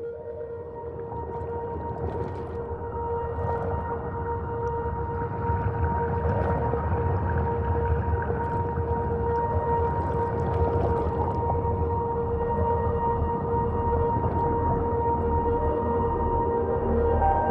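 Singing bowl ringing with a steady, sustained tone and a higher overtone, over a low rumble that swells louder through the first half, with a few faint clicks.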